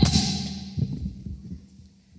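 A few soft, irregular low thumps that fade away, after a sharp sound at the start that rings off briefly in the room.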